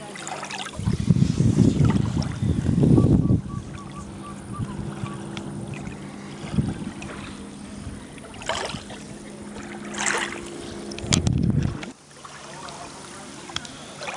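Shallow water lapping and splashing around wading feet on a gravel shore, with wind buffeting the microphone in a loud gust from about a second in and a shorter one near the end, over a steady low hum.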